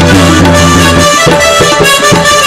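Indian devotional dance music led by a harmonium. A chord is held for about a second, then the drum beats pick up again.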